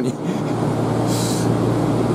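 Hiroshima 1900 series tram (former Kyoto city streetcar) pulling away from the stop, with a steady running sound of motors and wheels. A short high hiss comes about a second in.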